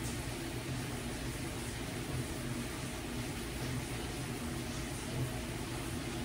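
TV-static sound effect: a steady hiss with a faint low hum underneath, cut in and out abruptly.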